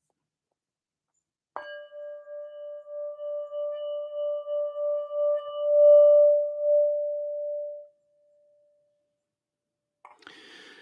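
Singing bowl struck once about a second and a half in, ringing with one clear tone that pulses with a steady wobble, swells, then dies away about two seconds before the end. It sounds as the opening bell of a meditation session.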